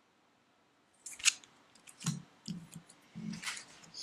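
A few short rustles and crinkles of a plastic-bagged comic and paper art print being handled and set down on a table, starting after about a second of near silence.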